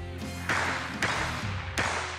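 Three sharp shots from a Ruger 10/22 .22 LR rifle, the first about half a second in and the others about half a second and three-quarters of a second apart, with background music running underneath.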